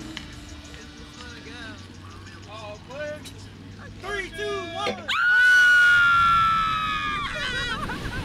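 A rider screaming as a slingshot reverse-bungee ride launches: after a few seconds of quiet laughing over a low hum, one long high-pitched scream breaks out about five seconds in and lasts about two seconds, sagging slightly in pitch, before turning into excited shouting.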